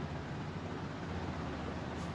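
Steady low hum and even hiss of room background noise.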